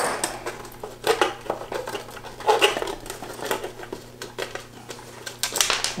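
Small metallic clicks and clinks of pliers turning a nut and washer off the sound jack on a projector's side cover, a few scattered taps with a quicker cluster near the end.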